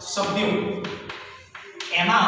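Chalk on a blackboard as words are written: a few sharp taps and strokes in the second half, with a man's voice briefly at the start.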